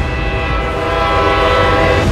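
Train horn sounding one long, steady chord over the low rumble of an approaching train, cut off suddenly at the end.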